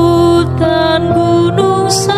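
Background music: a slow melody of long held notes over a steady bass line.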